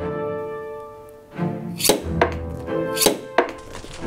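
String music, cello-led, with several sharp, bright hits; the loudest two come about two and three seconds in.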